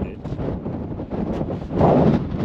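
Wind buffeting the camera microphone: an unsteady, low rushing noise that gets louder near the end.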